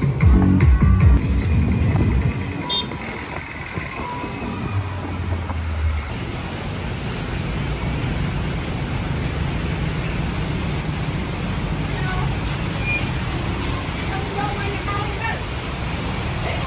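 Heavy rain pouring down over a wet road with traffic passing through it, a steady dense hiss that starts with a sudden change about six seconds in. Before that, music and voices.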